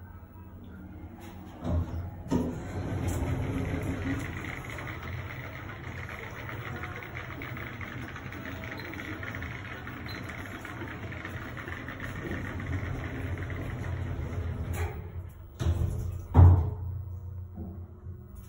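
A Tepper hydraulic elevator travelling: a thump about two seconds in, then a steady hiss and hum of the hydraulic drive and moving car. The sound stops after about thirteen seconds, and two thumps follow as the car comes to a stop, the second one the loudest.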